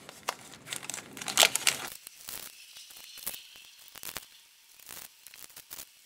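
Small clear plastic zip-top baggies crinkling and rustling as cube sticker sheets are pulled out of them, with many short crackles, busier in the first couple of seconds and sparser after.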